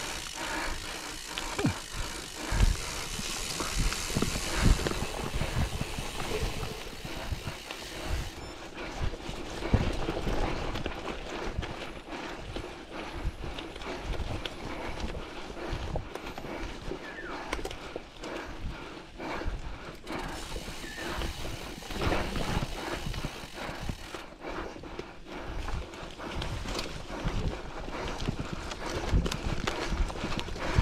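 Factor gravel bike riding a dirt forest singletrack: tyres rolling over dirt and leaves, with frequent irregular knocks and rattles as the bike jolts over roots and stones.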